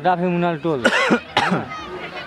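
A person's voice: a short stretch of speech or calling, then two short breathy bursts, about a second in and again half a second later.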